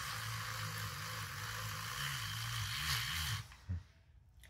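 Handheld battery milk frother whisking coffee in a glass: a steady motor hum with a whirring, frothing hiss, which stops abruptly about three and a half seconds in.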